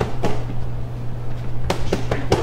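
Boxing gloves and focus pads smacking together: three sharp slaps, one shortly after the start and two in quick succession near the end, over a steady low hum.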